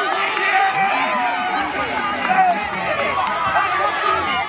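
A group of boys' voices shouting and talking over one another in excited celebration, a jumble of overlapping voices with no single speaker standing out.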